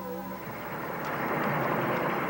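Farm tractor running in a field, its engine noise swelling in about half a second in and then holding steady, under a few soft held music notes.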